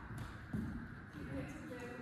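A badminton racket strikes a shuttlecock once, a sharp hit about half a second in, echoing in a large hall.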